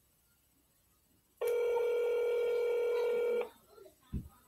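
Telephone ringback tone heard through a phone's speaker: one steady ring about two seconds long, starting about one and a half seconds in. It is the sound of an outgoing call ringing on the other end, not yet answered.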